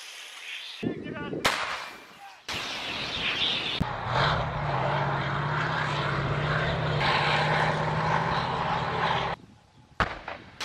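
Military field audio: sharp artillery-type blasts in the first couple of seconds, then the steady, even engine hum of a tracked armoured vehicle for about five seconds, cutting off just before the end.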